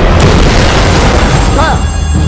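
A loud, dense boom and rumble, an explosion sound effect in a film trailer, that thins out near the end as a man's voice begins.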